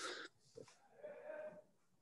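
A faint, short laugh from a person on a video call, heard over near silence.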